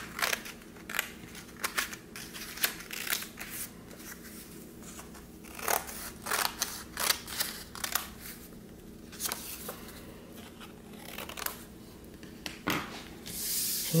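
Scissors snipping through two layers of folded construction paper, in short irregular runs of cuts with brief pauses between them.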